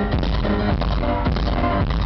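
Live band music, keyboard chords repeating about twice a second over a drum-kit beat, with poor sound quality.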